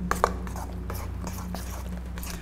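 A spoon stirring soft cake batter in a stainless steel bowl: quiet wet, squishy sounds with a few light clicks of the spoon near the start, over a steady low hum.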